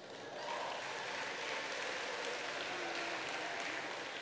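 Audience applauding in a large hall, swelling about half a second in and then holding steady.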